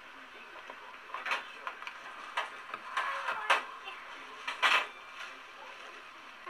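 Kitchen clatter: a handful of short, sharp knocks and clicks from metal pans and utensils being handled on a steel counter. The loudest two come about halfway through and about three-quarters through.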